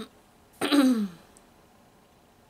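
A woman gives one short voiced sigh that falls in pitch, a little over half a second in.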